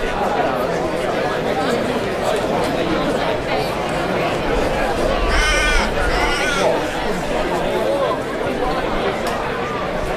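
Indistinct voices of footballers and spectators calling out during an Australian rules football match, with a loud, high-pitched call about halfway through and a shorter one just after.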